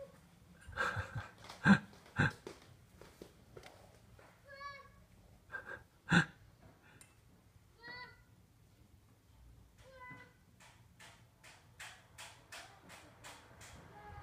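Pieces of sidewalk chalk clattering onto a wooden deck as a toddler throws them: several sharp knocks, the loudest two about 2 and 6 seconds in. A few short high-pitched squeals from the toddler come in between, and near the end a quicker run of light taps, about three a second.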